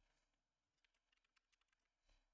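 Very faint computer keyboard typing: a quick run of about a dozen key clicks starting about a second in, as a word is typed over a selected one.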